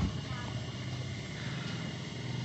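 Steady low background hum and hiss with no distinct event, in a pause between spoken words.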